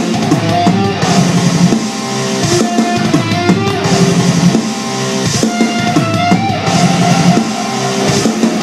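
Rock music: a full drum kit and electric guitar playing together, loud and continuous.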